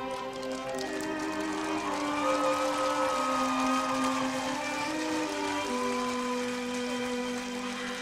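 Live band playing the instrumental intro of a song: an acoustic guitar strummed under a slow, sustained melody from violin and other held instrument notes. The chords change every second or two.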